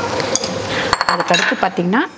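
Sharp metallic clinks of steel on steel as garlic cloves and a small steel bowl knock against a stainless-steel mixer-grinder jar: two or three clinks with a brief ring, about half a second and one second in.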